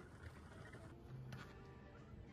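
Near silence: faint background noise, with a single faint click a little past a second in.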